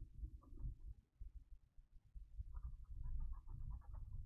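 Faint computer mouse clicks as pixels are painted: a few just under a second in, then a fast run of clicks near the end, over a low rumble.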